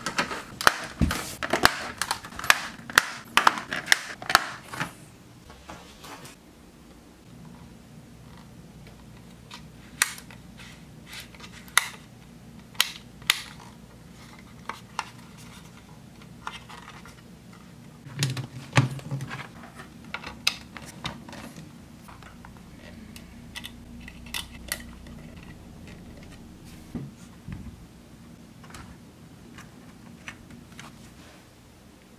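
Plastic HO-scale Walthers Power-Loc track sections being pressed together by hand: a quick run of sharp clicks in the first five seconds. Then scattered clicks and knocks of handling, with a cluster about eighteen seconds in as a plug is pushed into a power strip, over a faint steady hum.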